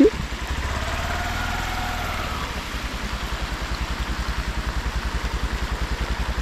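Motorcycle engine idling with a steady, even low pulse, under a constant rushing hiss of rain and a rain-swollen river.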